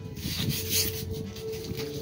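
Scraping and rubbing of the metal bow-step bracket on a boat trailer as it is slid into place by hand, with a stretch of scratchy scraping about half a second in, over steady background music.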